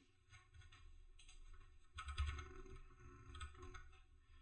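Faint computer keyboard typing: a few scattered key presses, the loudest about two seconds in.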